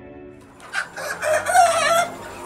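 A flock of native (deshi) chickens clucking, with one long wavering call near the end. The tail of a music jingle fades out in the first half second.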